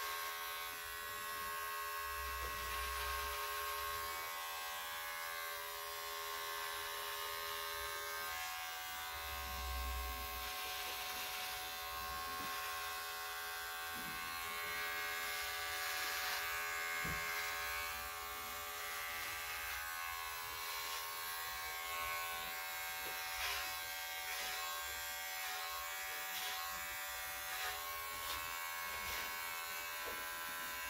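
Electric hair clippers buzzing steadily as they trim a beard and the hair at the side of the head, with a few faint clicks.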